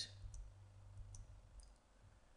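Near silence with a low hum and a few faint, short clicks.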